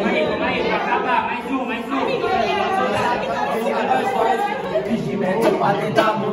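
Crowd chatter: many voices talking over one another in a large, echoing room.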